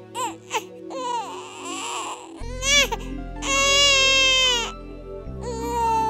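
A newborn baby crying: several short cries, then one long wail about halfway through, and another cry starting near the end. Soft background music with long held tones plays under it.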